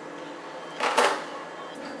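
Soft background music, with a brief clatter of small Beyblade toy parts being handled and set down about a second in.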